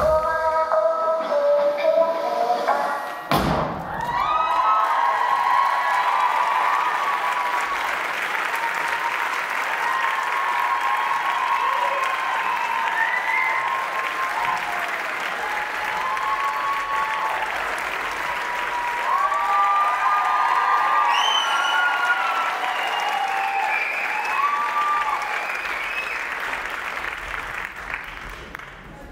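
The routine's music ends on a final sharp hit, then a theatre audience applauds and cheers, with whoops rising above the clapping. The applause eases off near the end.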